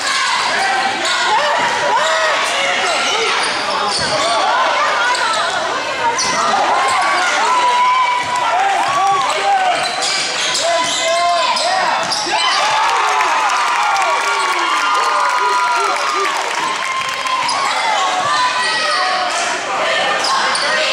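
Sounds of a basketball game in a gymnasium: a basketball bouncing on the court floor, sneakers squeaking, and indistinct voices of players and spectators.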